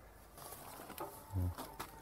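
Quiet background ambience with a few faint clicks, and a short low murmur from a man's voice about a second and a half in.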